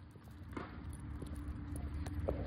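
Footsteps on a concrete path as a person walks with a small dog at heel, over a low rumble that grows louder; one sharp click about half a second in.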